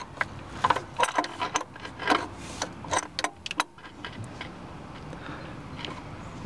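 Adjustable (crescent) wrench working the fitting nut of a power steering pressure hose as it is tightened: a run of irregular small metallic clicks and taps, thinning out after about four seconds.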